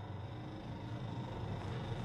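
Faint steady room tone: a soft hiss with a low, even hum underneath.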